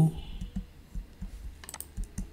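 Computer keyboard keys being tapped: a few light, irregular clicks, with a sharper pair near the end.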